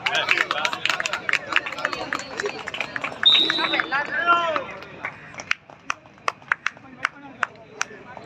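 Players and spectators shouting and clapping as a raider is tackled and the defending side wins a point. The claps come thick and fast with the shouting for the first four seconds or so, then thin out to single sharp claps.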